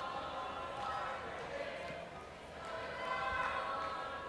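Quiet boxing-arena hall ambience: faint distant voices echoing in the big hall, with a soft low thud about three seconds in.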